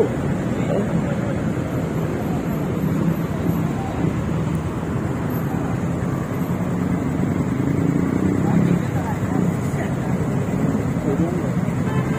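Steady road noise of idling engines and traffic, with several people talking in the background over it.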